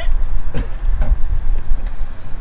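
A 2002 Nissan Maxima's 3.5-litre V6 idling steadily with a low rumble, sounding a little rough.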